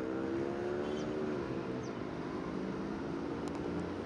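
A motor vehicle's engine running steadily over outdoor background noise. It is loudest for the first second or so, then its pitch dips slightly and it fades.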